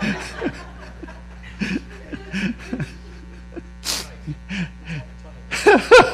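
Laughter and scattered chuckling. About four seconds in there is one short, sharp breathy burst like a sneeze, and louder laughter starts near the end.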